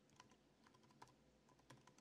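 Faint typing on a computer keyboard: a run of light, unevenly spaced key clicks.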